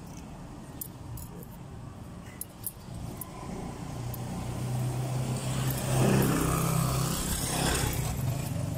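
A motor vehicle's engine passing close by on the street, building from about halfway and loudest about three-quarters of the way through. Before it, a few faint metal clicks of small parts being handled.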